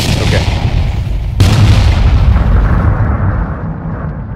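Explosion sound effect: two booms about a second and a half apart, each sudden and trailing into a long, deep rumbling decay.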